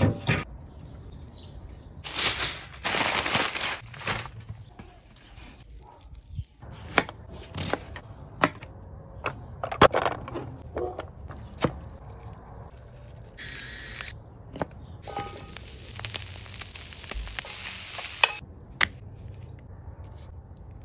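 Food-preparation sounds in quick succession: scattered clicks and knocks of utensils and containers, two stretches of hissing, one early and one late, and a brief steady whine about two-thirds of the way through.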